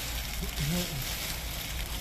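Steady background hiss with a brief, faint murmur of a voice a little under a second in.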